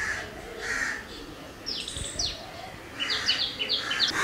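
Birds chirping outdoors: two quick falling whistles, then a run of short repeated notes near the end.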